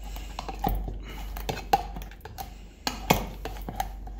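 Cocktail muddler pounding and grinding strawberries and leaves into a paste in a mixing vessel: a run of irregular knocks and scrapes, with a sharper knock a little under two seconds in and another about three seconds in.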